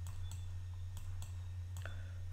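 A few sharp computer mouse clicks, spaced unevenly, over a steady low electrical hum.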